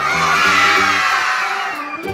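Children cheering sound effect, a crowd of kids shouting and cheering for about two seconds over light organ background music.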